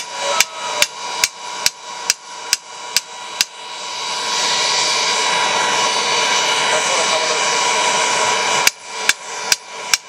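Hammer blows on a long steel chisel-bar driven into the bloomery furnace to break the bloom free: about nine sharp strikes, roughly two a second, then a pause of about five seconds and four more near the end. Under them runs the steady drone of the furnace's air blower.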